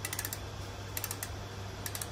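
Ratcheting clicks from the one-way cassette freehub body of a Golden Motor Magic Pie hub motor being turned by hand: a quick burst of clicks at the start, a few more about a second in, and two near the end.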